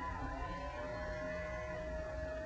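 A single steady held note, about two seconds long, with fainter higher tones above it, over a low steady rumble.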